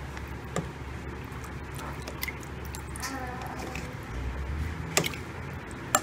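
Silicone spatula stirring potato broth in a pot, with a few sharp knocks of the spatula against the pot over a low steady hum.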